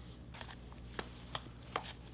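Paperback books being handled and set down: four faint, short taps and clicks over a low steady hum.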